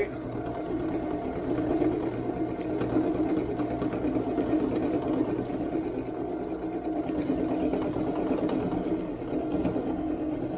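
A drill press running an end mill that cuts metal as the cross-slide milling table feeds the workpiece under it: a steady motor hum with a rough, fluttering cutting noise.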